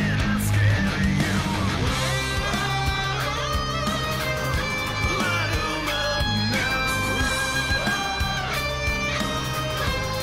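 Metal song with electric guitar played over a backing track with drums. Long held melody notes begin about two seconds in.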